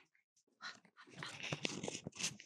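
Halloween props (a toy pumpkin and artificial autumn leaves) handled close to the microphone: scratchy rustling and crinkling with light taps. It starts about half a second in and grows denser and louder toward the end.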